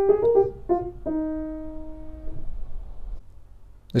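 Fully restored c.1892 Bechstein Model III 240 cm grand piano played gently: a few short single notes, then a held note that rings and dies away, damped about a second and a half later.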